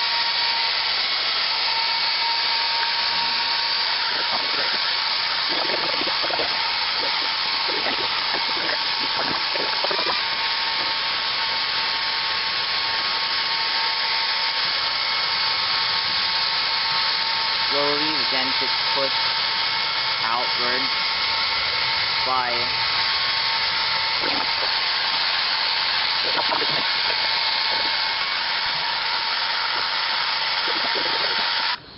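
Two handheld electric hair dryers running steadily, a loud whir with a constant motor whine. They are blowing warm air on a dented plastic bumper cover to soften it before the dent is pushed out.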